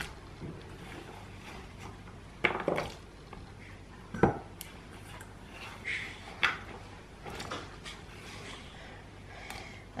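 Kitchen handling sounds: a handful of short, scattered knocks and clicks from food going into a steel soup pot and hands working on a wooden cutting board, the loudest a little past four seconds in, over a quiet room background.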